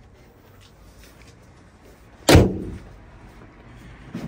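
The bonnet of a BMW X1 is shut with a single loud slam about two seconds in, with a brief ring dying away after it.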